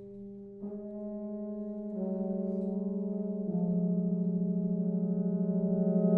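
Brass band playing soft held chords, with parts entering one after another about half a second, two seconds and three and a half seconds in, the sound growing steadily louder.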